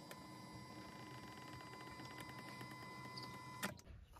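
Faint steady whine of the 2011 BMW E90's electric power-seat motor reclining the front seatback. It stops with a click a little before the end.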